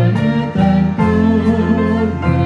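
Live band music with singers: a slow song over bass, guitar and drums keeping a steady beat.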